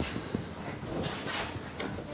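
Gloved hands opening a container of Oxuvar oxalic acid solution, with faint handling clicks and a short scraping rustle a little over a second in.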